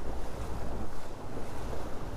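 Water rushing along the hull of a Dehler 30 one-design yacht under way, a steady surging noise with a low rumble, heard from inside the cabin.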